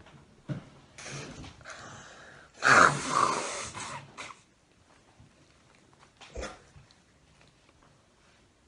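A woman blowing her nose into a tissue: a softer rush of breath, then a loud, noisy blast about three seconds in that lasts a second and a half.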